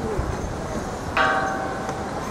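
Temple gong-bell (waniguchi) over a hall entrance, struck once about a second in by its rope, ringing with several steady metallic tones that carry on, over crowd murmur.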